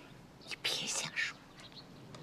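A person's short breathy sound with no voice in it, like a sigh or a whisper, beginning about half a second in and lasting under a second.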